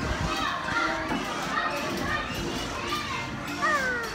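Children's voices chattering and calling out on an amusement ride, with a low rumble underneath.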